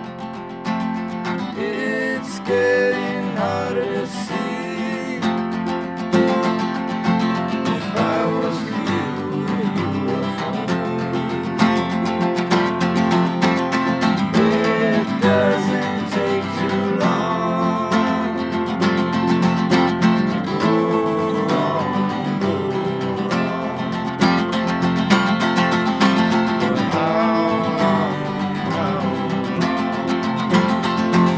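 Instrumental break of an acoustic rock-blues song: steel-string acoustic guitars strummed together, with a lead line of bending notes over them, growing slightly louder.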